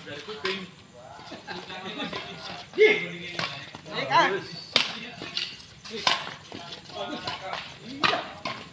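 Badminton rally: rackets strike the shuttlecock back and forth, several sharp smacks about a second apart, with players and onlookers calling out briefly between the hits.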